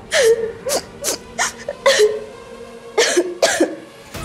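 A woman's short, breathy gasps or sobs, about seven in four seconds, some with a brief falling pitch, over a faint steady background music drone.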